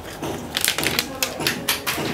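Plastic protective film crackling as it is peeled off a new smartphone, a rapid, irregular run of crisp clicks and crackles.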